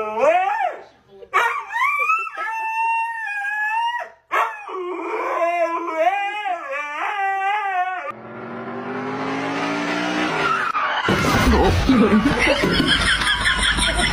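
Red-and-white husky-type dog howling in three long, wavering phrases that slide up and down in pitch. A loud, rough noise takes over for the last few seconds.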